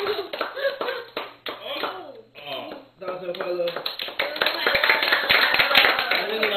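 A small group clapping, with excited voices and chatter over it, as birthday candles are blown out.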